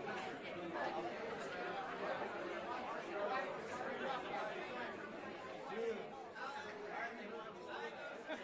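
Crowd of many people chattering, a continuous blend of overlapping indistinct voices with no single speaker standing out.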